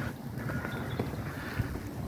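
Footsteps of someone walking on a tarmac lane, a soft step about every half second, with light wind on the microphone.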